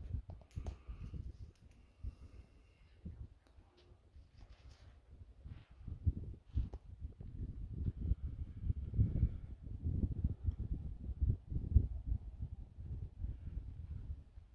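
Low, irregular rumbling on the phone's microphone, faint for the first few seconds and stronger in the second half, with no steady tone or regular rhythm.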